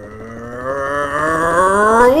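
A man's voice holding the word "number" as one long, slowly rising call, building in loudness, over a rapid drum roll tapped out on the tabletop.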